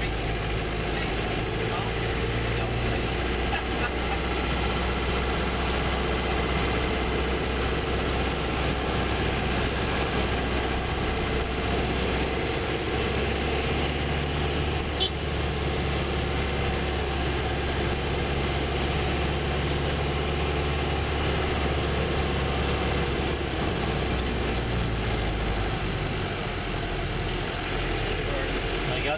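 Tour bus engine running at low speed in stop-and-go traffic, heard from inside the cabin as a steady hum whose low drone shifts pitch a few times. A single sharp click about halfway through.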